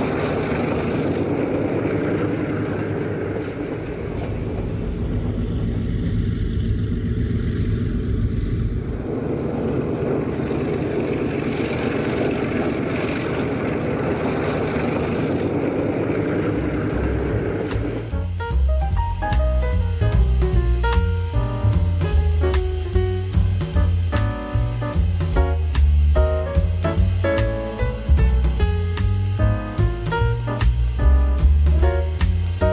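Diesel locomotive engines running steadily, a low rumble for about the first eighteen seconds. Then jazz music with drum kit and bass takes over and plays on.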